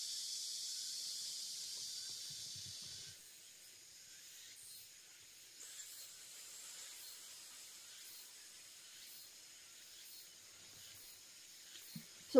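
One long, slow, thin human breath drawn during a deep-breathing exercise, a steady hiss that cuts off about three seconds in. After it there is only faint outdoor background with high insect chirps.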